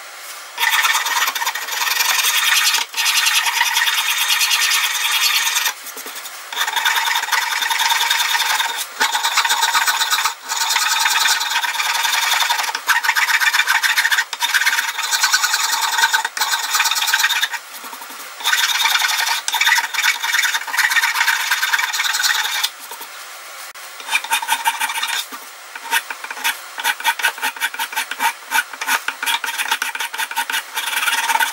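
Hand file rasping along the edges of a fibreboard (MDF) plaque to round them over, in long runs of scraping strokes with a few short breaks. Near the end the strokes become shorter and separate.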